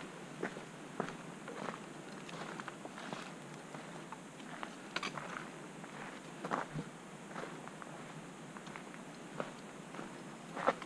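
A hiker's footsteps on a dirt forest trail: faint, irregular crunches and scuffs at about walking pace.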